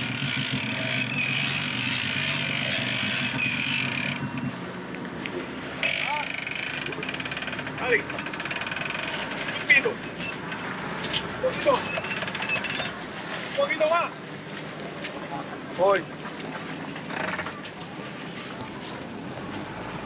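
Yamaha outboard on a center-console boat running in gear and churning up water as the boat is power-loaded onto its trailer, with the throttle held on to push the hull up. It drops off about four seconds in, leaving a quieter background with short bursts of distant voices.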